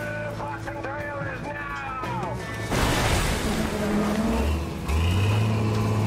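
Shouting voices over a music track, then about three seconds in a sudden loud rush of noise, followed by a low steady drone that steps up in pitch near the end, as an excavator's diesel engine revving.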